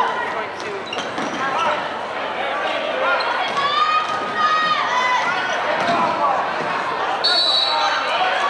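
Basketball being dribbled on a hardwood gym floor during play, under a steady din of spectators' voices and shouting in a large hall. Near the end comes a sharp, steady, high referee's whistle blast.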